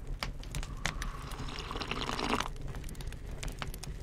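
Open wood fire crackling with frequent small irregular pops, and a long slurping sip from a cup about a second in.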